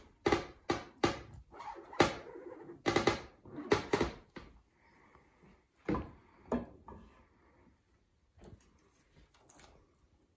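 A squeegee is scraped repeatedly across a MiScreen mesh screen, pushing ink through onto a shirt sleeve, with about eight quick strokes in the first four and a half seconds. Two sharper knocks follow, about six seconds in, as the squeegee is set down in its stand, then lighter handling knocks from the frame.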